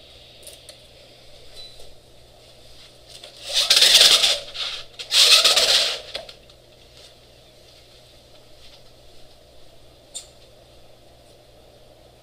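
Pull-down projection screen being drawn down, two noisy rushes of about a second each a few seconds in, with a faint click later over a low steady room hum.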